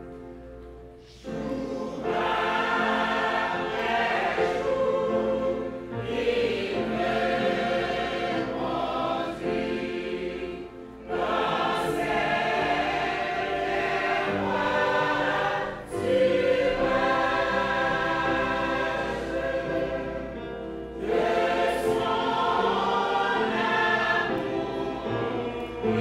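Church choir singing together, coming in about a second in and singing in phrases of roughly five seconds with brief dips between them.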